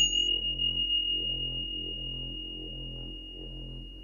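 A single struck meditation bell: one clear high tone rings on and slowly fades, struck to mark the start of the meditation. Under it plays soft ambient background music with a slow, low pulse.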